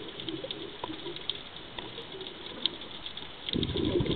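Underwater sound: a steady crackle of sharp clicks over a faint low burbling, with a louder low rush of sound starting near the end.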